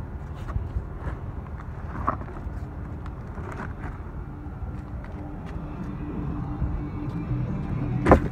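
Steady low rumble of an idling pickup truck, with a few light knocks and rustles from a cardboard box of scrap brake calipers being carried, and a sharp thud at the very end.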